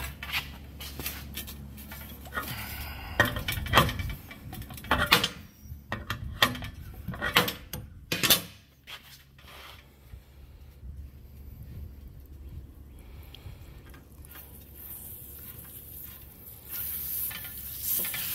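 Metal clinks and knocks as a hose fitting and tools are handled against a stainless heat exchanger on a metal workbench, then a quieter stretch. Near the end a hiss starts as water under line pressure sprays from the fitting during a pressure test of the heat exchanger.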